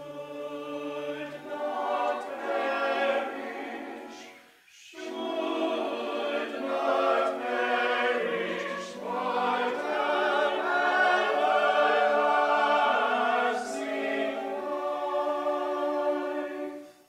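Mixed church choir singing in parts, with a short break between phrases about five seconds in.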